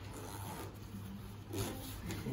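A zipper being drawn along a baby stroller's fabric canopy, with the fabric rubbing and scraping on the frame; it is a little louder near the end.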